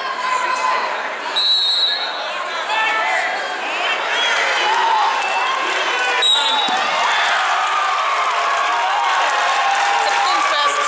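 Coaches and spectators shouting over one another in a large hall during a wrestling bout. A whistle sounds about one and a half seconds in, and again briefly a little after six seconds.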